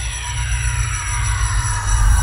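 Logo ident sound effect: a deep rumble that swells steadily louder under a cluster of tones sliding slowly downward in pitch.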